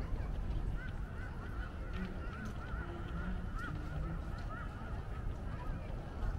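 Birds calling in a run of short, arched, honking notes, several a second, over a steady low outdoor rumble.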